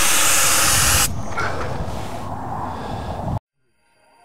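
Air hissing out of a Toyota FJ's BFGoodrich off-road tyre as the tyre is aired down at the valve stem. The hiss is loud for about the first second, drops to a quieter hiss, then cuts off shortly before the end.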